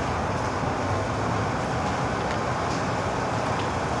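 Steady street traffic noise, an even rumble with no distinct events.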